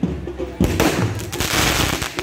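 Fireworks going off overhead: a sudden burst about half a second in, then a loud, steady hiss of sparks lasting well over a second.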